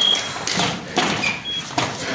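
Electric fencing scoring machine's steady high beep, signalling that a touch has registered, cutting off just after the start. Then footsteps, knocks and room noise, with a short beep about midway.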